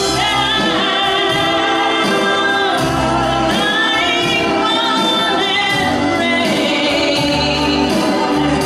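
A woman singing long, held notes with vibrato over a live band, with steady bass notes underneath.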